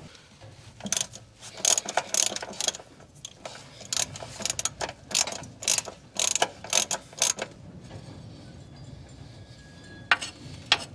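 Socket ratchet wrench clicking in quick, uneven runs as a nut on a truck battery is worked loose to remove the battery. The clicking stops about seven and a half seconds in.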